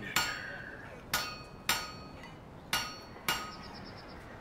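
Five sharp metallic clanks, each with a brief ring. They come about half a second to a second apart, in rough pairs.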